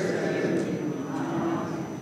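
Congregation speaking a responsive line in unison, many voices blurring into one low murmur that fades away near the end.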